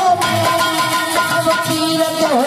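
Instrumental passage of folk bhajan accompaniment: a harmonium holding steady notes, a dholak drum beating under it, and a small string instrument.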